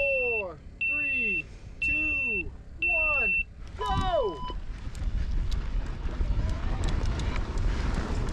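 Electronic race start timer counting down: a short high beep about once a second, four times, then a longer start beep at a different pitch about four seconds in. Right after it, e-mountain-bike tyres roll and crunch over a dry dirt and gravel trail, with clicks and rattles from stones and the bike.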